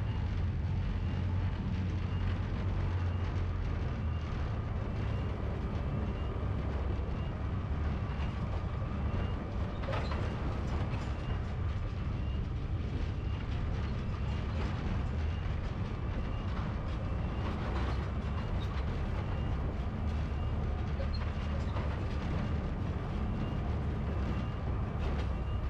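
The 12-ton tracked unmanned RACER Heavy vehicle running, heard from on top of its hull: a steady low rumble of drive and tracks. A faint high chirp repeats at an even pace, a little faster than once a second.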